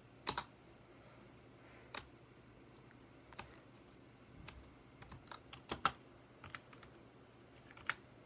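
Keys tapped on a computer keyboard, scattered single keystrokes with a quick flurry about five to six seconds in, as text is deleted and retyped.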